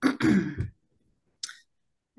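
A woman clears her throat once, a short throaty sound with a falling pitch, then takes a short breath about a second and a half later.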